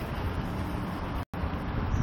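Outdoor background rumble of wind on a phone microphone, steady and low, with the audio cutting out for an instant just past a second in.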